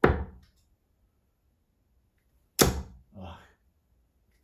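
Two steel-tip darts with Caliburn EVO points hitting a bristle dartboard, one right at the start and the next about two and a half seconds later, each a single sharp impact.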